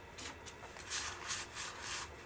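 1987 Donruss Opening Day baseball cards sliding and rubbing against one another as a stack is shuffled through by hand: a faint series of short swishes.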